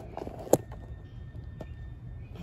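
A single sharp click about half a second in, then a fainter click a second later, over a low steady outdoor rumble.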